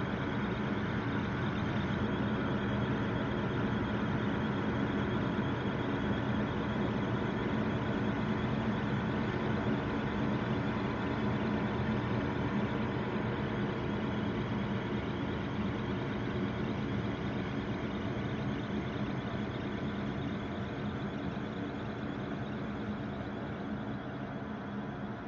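Ambient drone music: a dense, steady hum of many held tones layered together, with no beat or melody, easing off slightly near the end.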